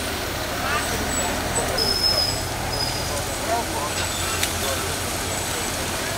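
Outdoor fair crowd ambience: a din of scattered voices over a steady low vehicle rumble, with two brief high thin tones about two and three seconds in.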